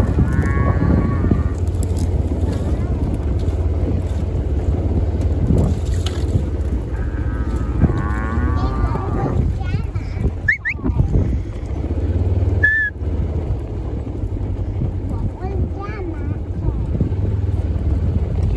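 Cattle lowing as working dogs move the mob, over a steady low rumble. There are two short, sharp whistles, one about ten seconds in and one about twelve and a half seconds in: a handler's whistle commands to the dogs.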